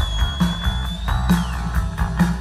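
Live rock band playing: electric guitars, bass guitar and drum kit, with the drums striking about twice a second. A long high note is held over the band and slides down in pitch about three quarters of the way through.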